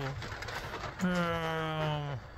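A woman's voice drawing out one word in a long, even-pitched exclamation from about a second in. Before it there is a second of faint scattered rustling and scuffling.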